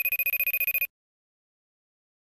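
A telephone ringing: one rapidly trilling ring lasting about a second, at the very start.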